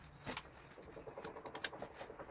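Soft rustling and a run of small, irregular clicks as a hooded sweatshirt is gathered and handled on a tabletop, with a sharper cluster of clicks about a third of a second in.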